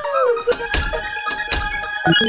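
Cartoon background music with a held note, broken by a quick series of about five sharp thunks in the middle.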